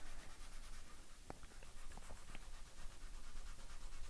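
Faint rubbing of a fingertip over graphite pencil shading on drawing paper, smudging it to soften the tones, with a few small ticks in the middle.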